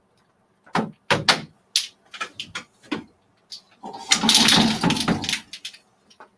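Takadai braiding stand being worked by hand: wooden tama bobbins and the frame's wooden parts clacking, a run of separate knocks followed about four seconds in by a longer sliding rattle as threads and bobbins are moved across.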